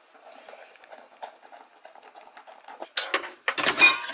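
A dog eating from a stainless steel bowl, a soft patter of chewing and bowl contact. About three seconds in, cookware clatters loudly as it is pulled out of a kitchen cabinet.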